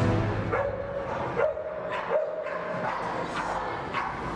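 A dog whining in three high calls about a second apart, each rising quickly and then held briefly.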